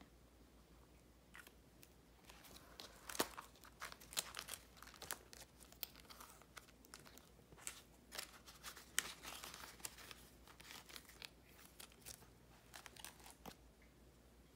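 Faint rustling and crinkling of paper as a dollar bill is slid into a paper cash envelope in a binder, with scattered light clicks and taps of the handling.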